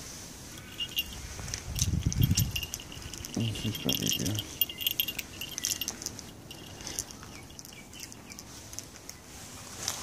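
Small bell on a cat collar jingling in bursts for the first few seconds, with rattling clicks and rustling as it is handled.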